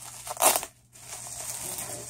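Plastic bubble wrap crinkling as it is handled, with one loud crunch about half a second in and steady crackling from about a second in.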